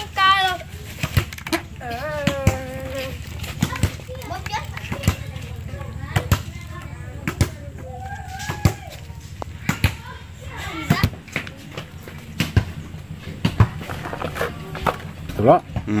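Indistinct background voices, children among them, with scattered sharp clicks and clinks of metal parts being handled and fitted.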